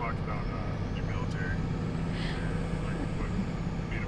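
Steady road and engine rumble heard inside a moving vehicle's cabin.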